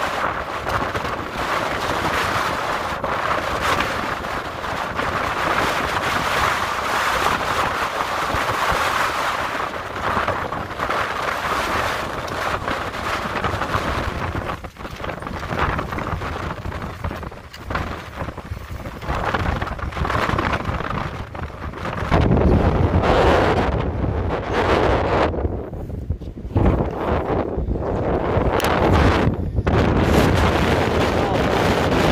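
Storm-force wind gusts buffeting the microphone in a loud, continuous rush. About two-thirds of the way in it turns to heavier, low rumbling blasts that come and go in bursts.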